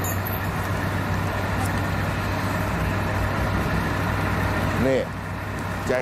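Heavy diesel machinery running steadily at a loading site, from the hydraulic excavator and the trucks beside it, with a low steady hum. The noise drops about five seconds in.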